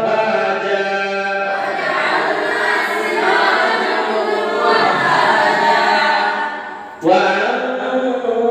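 Quranic recitation chanted in a memorisation class: a single voice leads for about the first second and a half, then a group of boys recites together in unison. The group fades out near the end and a single voice begins the next phrase.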